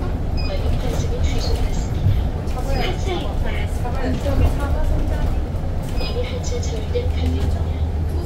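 Inside an Edison Motors Smart 093 electric bus on the move: a steady low rumble of road and running gear, with voices mixed in.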